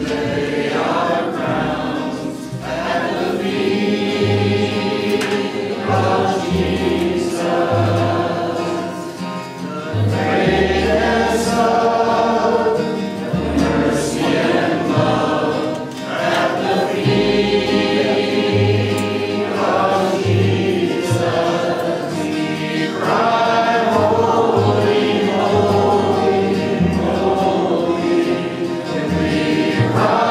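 A small worship vocal group singing a gospel song in harmony, accompanied by acoustic guitar and an upright bass playing low held notes.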